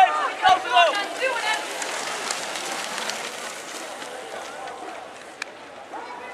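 Spectators shouting for the first second or so as a pack of BMX bikes rides past. Then the bikes' tyres rush over the dirt track with faint ticking, fading as they move away.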